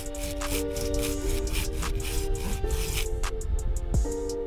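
Soft background music with sustained chords over a run of short rubbing scrapes: a thin metal sharpening plate being pressed and worked into a sawn recess in a log.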